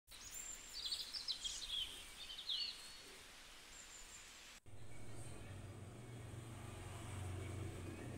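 Birds chirping and trilling in short high calls over faint open-air ambience. About halfway through, the sound cuts abruptly to a steady low hum.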